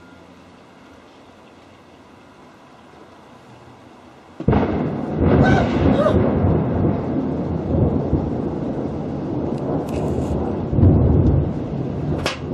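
Thunder from a close lightning strike: a faint steady hiss, then a sudden loud crack about four and a half seconds in that rolls on as a long, deep rumble with several swells. This is the strike that knocked out the power.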